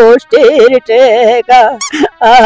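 A person wailing loudly in grief: a string of long cries with a quivering, wavering pitch, broken by short catches of breath.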